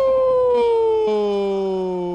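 Broadcast commentator's drawn-out goal shout, one long held "gol" sliding slowly down in pitch. A second, lower held tone joins about a second in.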